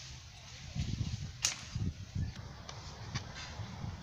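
A hoe chopping into loose soil and leaves in a compost pit: a few dull thuds, with one sharp click about a second and a half in as the blade strikes something hard.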